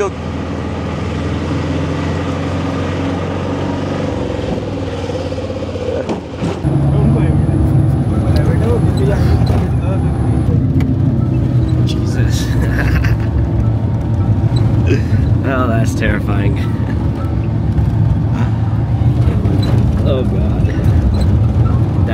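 Engine noise heard from inside a moving vehicle. First an auto rickshaw's small engine runs steadily; then, after a sudden break about six seconds in, a louder and deeper engine drone follows as a car climbs a steep, winding hill road.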